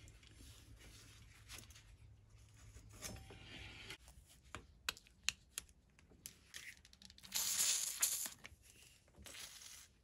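WD-40 aerosol can sprayed through its red straw onto the crank bolt: a short hiss of a little under a second, about seven seconds in, with a few small clicks and taps of handling before it.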